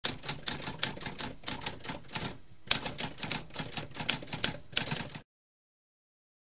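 Typewriter keys typing in a fast run of clacks, with a short pause about two and a half seconds in before the typing resumes. It stops abruptly a little after five seconds.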